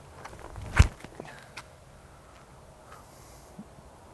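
A single sharp thump about a second in, from a disc golfer's feet planting on a concrete tee pad as he throws sidearm, with a couple of faint footstep clicks after it; the rest is a low, steady outdoor background.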